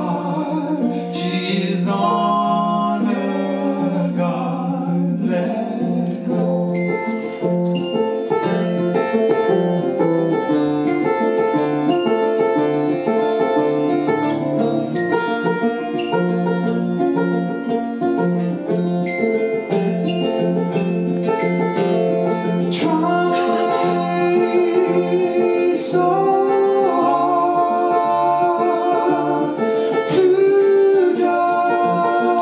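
Live acoustic band playing an instrumental passage: a banjo picking quick notes over a strummed acoustic guitar, with a steady low bass line under them.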